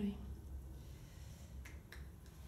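The last trailing sound of a woman's spoken voice, then a low steady room hum with a couple of faint short clicks near the end.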